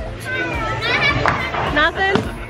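Young children's voices, excited vocalising and chatter, mixed with other people's voices and a steady low hum underneath.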